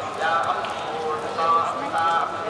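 People's voices talking among a group.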